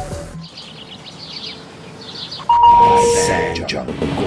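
SsangYong TV commercial logo sting: a quieter passage with short high chirps, then a sudden loud chime of two held notes about two and a half seconds in, over music.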